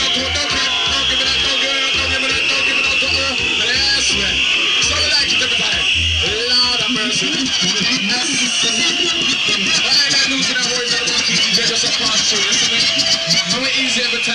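Reggae record played loud through a sound system, with a deep, evenly pulsing bass line that drops out about six seconds in.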